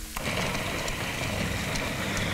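Countertop food processor switched on: the motor and blades start suddenly about a quarter second in and run steadily.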